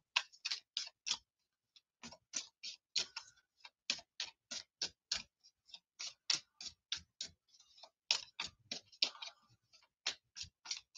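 Light clicks of computer keyboard keys, roughly three a second and unevenly spaced, with a short pause about a second in: slow typing.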